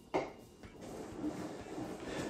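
A drink set down on a wooden side table with a single sharp knock just after the start, followed by a softer rustling hiss.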